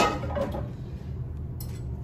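A frying pan set down on a gas stove's metal grate with a clank that rings briefly, followed by a lighter knock about half a second later and a small click near the end, over a steady low hum.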